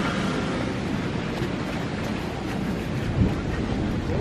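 Wind buffeting a handheld camera's microphone outdoors: a steady rushing noise, with a stronger low gust about three seconds in.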